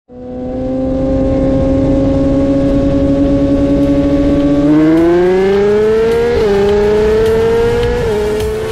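Inline-four superbike engine held at a steady roll, then the throttle opens just past halfway and the pitch climbs, dips briefly at an upshift, and climbs again.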